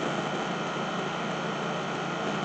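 Steady room noise in a pause in the talk: an even hiss with a few faint steady tones, unchanging throughout.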